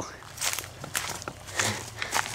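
Footsteps through grass and leaf litter, a few irregular steps and rustles of the undergrowth.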